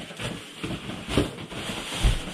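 Large cardboard shipping box being lifted off its contents: continuous scraping and rustling of cardboard and plastic wrapping, louder about a second in and again near the end.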